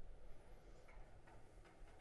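Near silence: faint room tone in a lecture room, with a few faint ticks.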